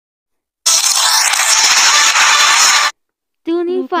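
A loud, even burst of hiss-like noise lasting a little over two seconds, starting and cutting off abruptly, followed near the end by a high-pitched voice.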